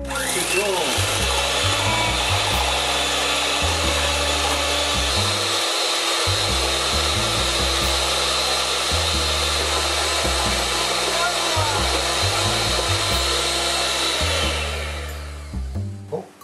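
Electric hand mixer running steadily, its beaters whipping egg and sugar to a foam in a stainless steel bowl. It comes on at the start and runs down to a stop near the end.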